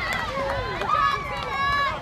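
Several women's voices shouting and cheering over one another, high excited calls in a softball team's celebration at home plate.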